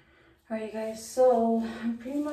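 A woman's voice speaking, starting about half a second in after a brief near-silence, with one long drawn-out syllable.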